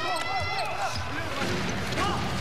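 Basketball game sound on a hardwood court: the ball dribbling and sneakers squeaking in short high-pitched streaks, over arena crowd noise.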